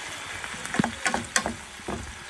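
Chicken wings and sliced onions sizzling in a frying pan, with a wooden spatula scraping and knocking against the pan several times in the second half.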